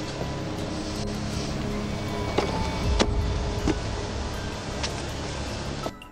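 Car engine idling with roadside noise, heard through a police dashcam under quiet background music, with a few sharp clicks in the middle.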